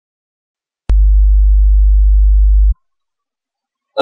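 A loud, very low steady electronic tone lasting almost two seconds. It starts with a click about a second in and cuts off suddenly.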